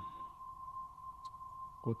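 A steady high-pitched electronic whine at one unchanging pitch. A man's voice starts near the end.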